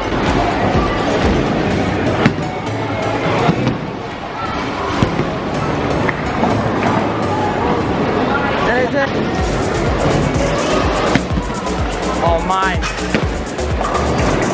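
Bowling alley din: background music and voices over bowling balls rolling down the lanes, with a few sharp knocks of balls and pins.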